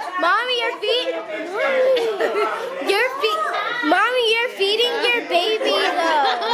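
A group of people talking and calling out over one another in high, excited voices, so that no single speaker stands out.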